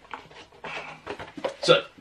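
A cardboard Funko Pop box with a plastic window being handled: a few light clicks and rustles, then a man's voice says "So" near the end.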